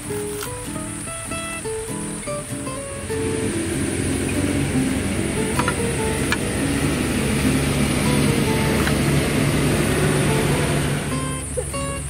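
Background acoustic guitar music, plucked at first, growing fuller and louder from about three seconds in and easing back near the end.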